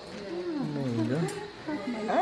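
Newborn baby crying moments after a caesarean delivery: a rough cry that falls in pitch in the first second, then a higher wail rising near the end.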